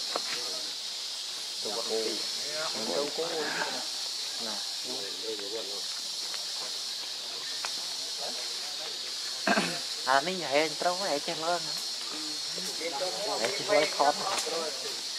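A steady high-pitched drone of insects in the trees, with voices of people talking a few times over it.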